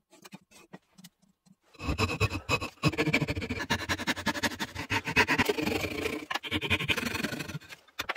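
A fine-toothed hand saw cutting across a pine board clamped in a bench vise, in rapid back-and-forth strokes that start about two seconds in and stop just before the end. It is preceded by a few faint light ticks.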